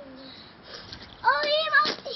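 A young child's high voice making long, wavering calls without clear words, starting a little past halfway.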